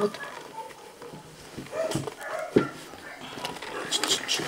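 A dog whimpering briefly while its hindquarters are being bandaged, with quiet handling noise and a sharp knock a little after the whimper.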